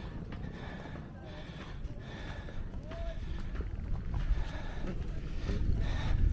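Wind buffeting the microphone, a low uneven rumble, with faint voices in the background.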